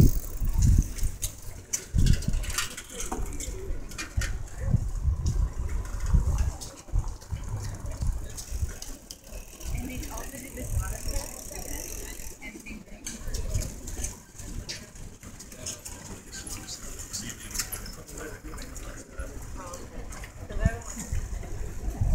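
Wind rumbling unevenly on the microphone of a camera moving along with a group bicycle ride, with indistinct voices of the riders and scattered small clicks and rattles.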